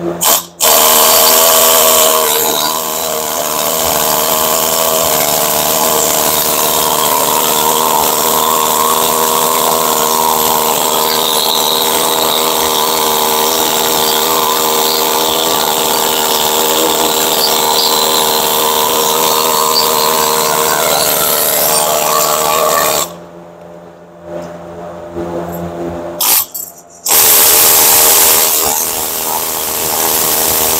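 Power tool spinning a wire brush against the rusty bearing bore of a Subaru Impreza rear knuckle, scrubbing it clean before the new bearing goes in. It runs steadily with a whine and a scraping hiss, stops about 23 seconds in, gives a short burst about three seconds later, then runs again.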